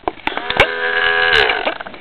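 Vinyl record on a turntable: a sustained musical tone swoops up in pitch as the record comes up to speed, holds for about a second, then sags down in pitch as it slows. Several sharp clicks of handling come around it.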